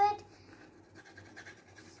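Graphite pencil scribbling back and forth across paper, faint scratchy strokes, shading over wax writing to bring the hidden message out.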